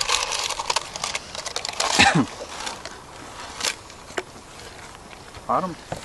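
Ketchup squirting and sputtering out of a plastic squeeze bottle for about the first two seconds, then a few faint clicks.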